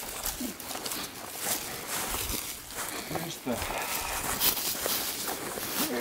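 Footsteps on the forest floor and rustling of pine branches brushing against clothing as two people push through young pine brush, an irregular run of short crunches and swishes.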